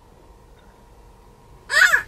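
Quiet car-interior hush, then near the end a toddler's short, high-pitched cry, rising and falling in pitch: an upset, fussing child.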